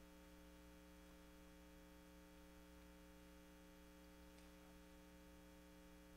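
Near silence with a steady electrical mains hum.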